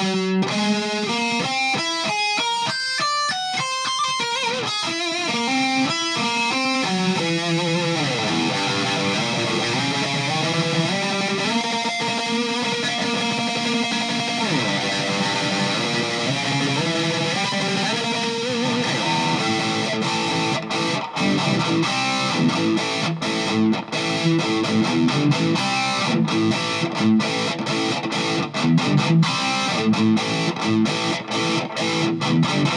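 Heavily distorted electric guitar played through a Boss ME-50 multi-effects pedal on its Metal distortion setting, with the drive turned up high. Fast note runs open it, followed by held notes and slides; from about twenty seconds in the playing turns choppy, broken by many short stops.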